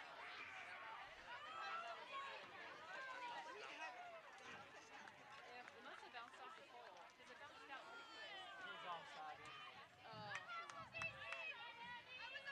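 Faint overlapping voices of soccer players and people on the team bench, chatting and calling out.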